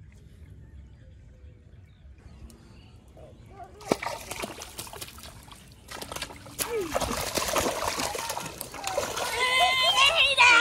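A hooked fish thrashing and splashing at the surface of shallow muddy water, starting suddenly about four seconds in and growing louder, with excited voices coming in near the end.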